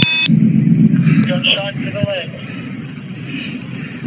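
Police body-worn camera recording played back: a short electronic beep at the start, then low rumbling noise with faint voices, slowly fading over the last couple of seconds.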